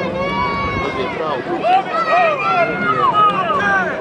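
Several men shouting and calling in overlapping voices, urging on the fighting bulls, over a murmur of crowd.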